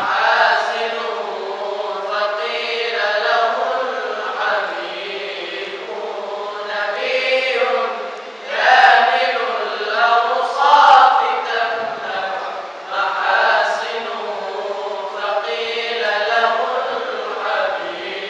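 Melodic Quran recitation (qirat) by male voices, long sustained phrases that rise and fall in pitch, swelling loudest about halfway through.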